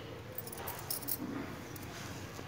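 Bangles on a wrist clinking while a brush scrubs the cement wall of a floor drain, in a few short scraping strokes.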